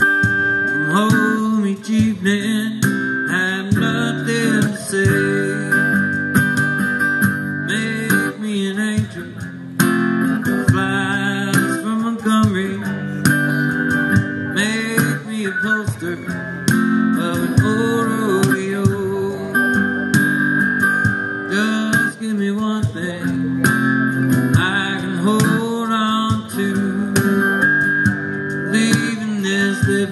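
Live acoustic guitar strumming with a cajon played with sticks keeping the beat, an instrumental stretch of a slow country song.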